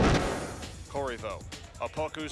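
The tail of an intro sound-effect hit, loud at the start and fading over about half a second, then a male sports commentator's voice begins calling the play over the match footage.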